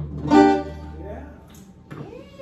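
A small swing combo's tune ending: a short, loud final note with a clear pitch about a third of a second in, over a low upright bass note that fades out around the middle, leaving only quiet room sound.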